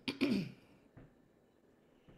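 A person clearing their throat once, short and sharp, heard over a video-call audio feed.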